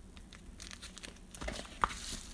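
Soft crinkling and rustling of a padded mailer and a blue-tape-wrapped stack of plastic card holders being handled, with a few small clicks, a little louder near the end.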